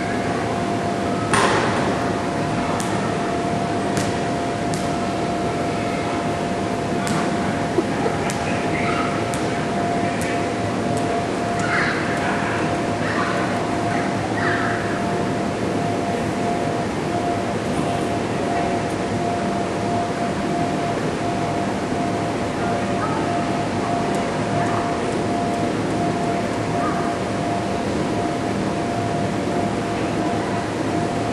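A steady room hum with a constant tone, broken by a few scattered knocks of a ball bouncing on a hard gym floor in the first several seconds, the loudest about a second and a half in. Brief faint voices come around the middle.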